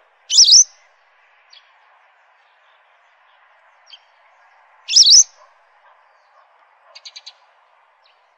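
Western yellow wagtail calling: two loud, high, sharp calls about five seconds apart, then a quick run of four short, fainter notes near the end. A faint, steady hiss of the shallow stream runs underneath.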